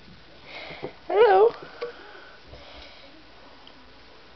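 Close breathing and sniffing, with a short wavering vocal sound a little over a second in.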